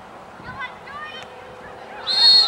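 Distant, high-pitched shouts from girls' soccer players and sideline spectators carrying across the field, with a soft thud about half a second in.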